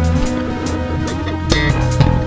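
Instrumental music: electric bass holding low notes over drums, with a loud drum hit about one and a half seconds in.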